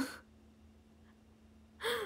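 A young woman's voice breaks off, followed by a short quiet stretch with a faint steady hum. Near the end comes a sharp, breathy intake of breath as she breaks into a laugh.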